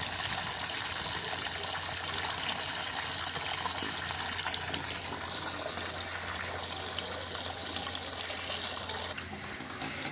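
Water gushing and churning steadily in an open borewell casing around an inserted pipe, over a steady low hum, easing a little near the end.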